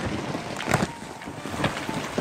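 Landslide in motion: rock, soil and uprooted trees sliding and tumbling down a slope, a steady rushing noise broken by a few sharp cracks and knocks, about a second in and again near the end.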